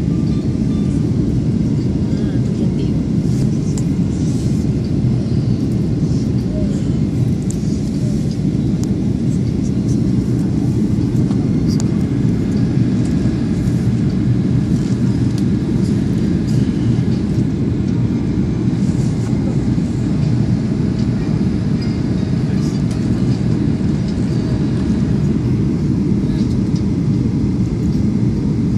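Steady low rumble of a Boeing 737 airliner's cabin in flight, engine and airflow noise heard from a window seat over the wing during the descent.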